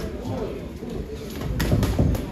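Boxing sparring with gloved punches and footwork on the ring canvas. There are a couple of sharp smacks near the end.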